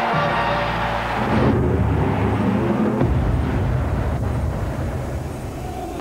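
Television title music; about a second and a half in the higher notes drop away, leaving a deep low sound that slowly fades out.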